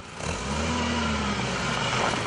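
Old Mercedes-Benz saloon's engine running as the car rolls slowly through a puddle on a potholed gravel road, its note rising and easing off once.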